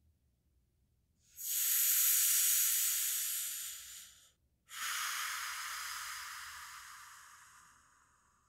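Two long, steady hissed breaths like a drawn-out 'shhh', the first lasting about three seconds, the second starting after a short break and slowly fading away.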